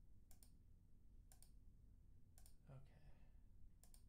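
Computer mouse clicking: four quick pairs of faint clicks, about a second apart, over a quiet room hum.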